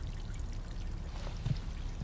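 Steady low background noise, a soft rushing like running water, with one faint low thud about one and a half seconds in.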